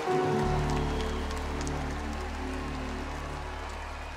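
Live band's closing chord held and slowly dying away over a steady low bass note at the end of a slow ballad, with a faint even hiss underneath.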